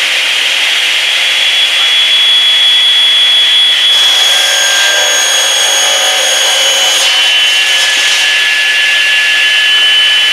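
Dimension saw running at full speed with a steady high whine, having just been switched on. A board is fed through the spinning blade for a rip cut, adding a higher cutting noise from about four seconds in that stops abruptly at about seven seconds.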